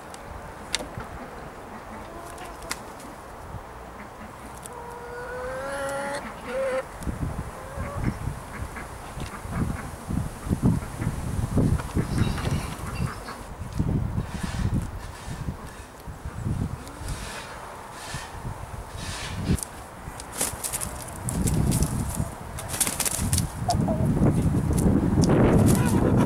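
Domestic hens calling, with one drawn-out, wavering call about five seconds in, as they come out of the henhouse. Low thumps and rustling follow, growing busier and louder towards the end.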